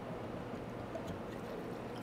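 Steady low background hum of room tone in a small equipment room, with no distinct event standing out.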